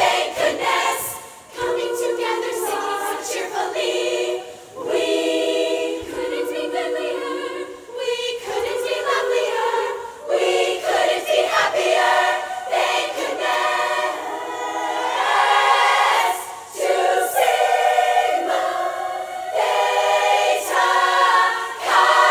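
Large women's choir singing unaccompanied in harmony, in phrases broken by brief pauses, growing louder in the second half.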